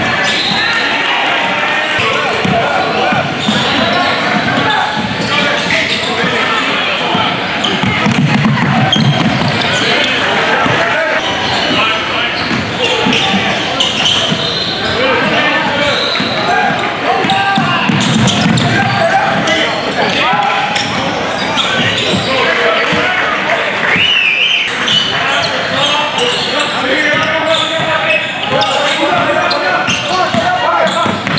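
Gym game sound: a basketball dribbling and bouncing on a hardwood court under steady overlapping chatter and shouts from players and spectators, echoing in a large hall. A brief high squeak rises about two thirds of the way through.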